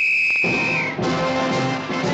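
Marching brass-band music opening on one long high held note that drops away about a second in, followed by several brass parts playing together.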